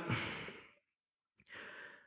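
A man's breath close to the microphone: a sighing exhale that fades out over about half a second, silence, then a short faint inhale near the end.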